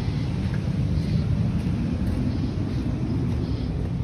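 Wind buffeting a phone's microphone outdoors: an uneven, gusty low rumble with a faint hiss above it.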